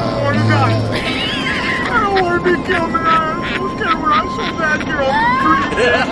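Unclear vocal sounds from a person, with pitch sliding up and down, over a faint steady high tone.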